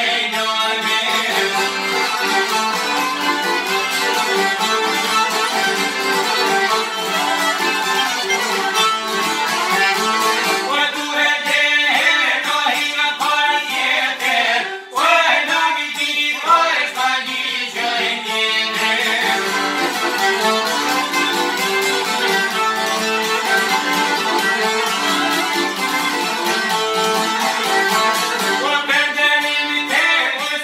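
Albanian folk ensemble playing a tune together: violin, piano accordion and two plucked long-necked lutes (çifteli and sharki), with a brief dip in loudness about halfway through.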